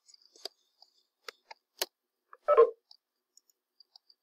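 A handful of sharp, isolated clicks of a computer mouse and keyboard as a subscript letter is typed and formatted, with one brief louder sound about two and a half seconds in.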